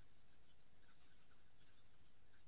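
Near silence: faint, steady room tone in a pause between spoken sentences.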